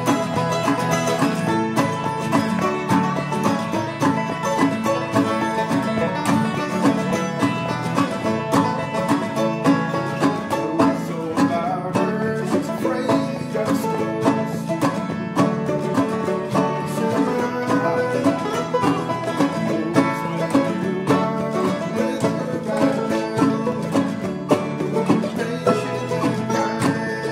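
A bluegrass band playing live on acoustic string instruments: acoustic guitars strummed and a mandolin picked in a steady, unbroken tune.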